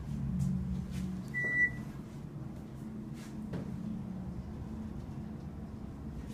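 Steady low hum inside a Westinghouse hydraulic elevator car, with one short, high electronic beep from the elevator about a second and a half in.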